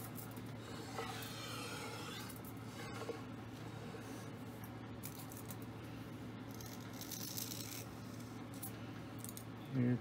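A Colchester Master 2500 lathe's cross-slide is slid and turned around on a surface plate, a faint scraping rub in the first couple of seconds. Light handling scratches follow as a thin feeler shim is worked at its edge, over a steady low hum.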